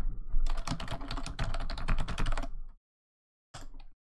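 Rapid typing on a computer keyboard: a dense run of keystrokes lasting about two seconds, then stopping.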